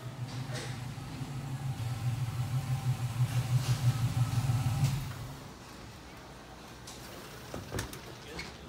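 1966 Chevy II Nova's LS V8 engine running at a low idle as the car creeps forward, a low pulsing that grows louder and then dies away about five seconds in.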